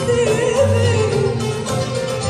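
A woman singing a classical Arabic song live over an Arab music ensemble with oud, her voice moving in ornamented, wavering lines above a steady bass accompaniment.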